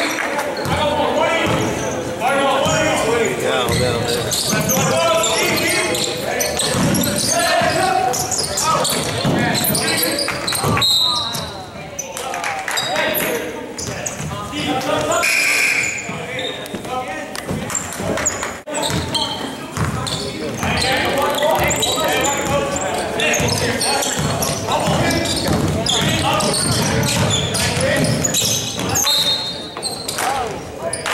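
A basketball being dribbled and bounced on a hardwood gym floor during a game, mixed with indistinct voices of players and spectators echoing in the gymnasium.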